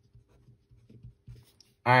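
Pen writing on paper: a run of short, faint strokes as block capitals are lettered.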